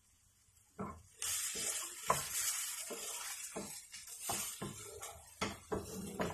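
Diced carrots and bell pepper frying in a nonstick pan, with a sizzle that starts about a second in. A wooden spatula stirs and scrapes them around the pan in repeated short strokes.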